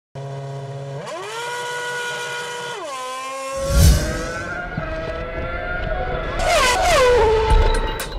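Formula One car's V8 engine revving: the pitch rises sharply about a second in, holds high, then drops back. A loud rushing burst near the middle follows, then engine notes that fall in pitch toward the end, like a car passing at speed.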